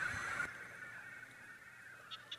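A quiet pause with low room tone, in which the tail of a voice fades out in the first half second.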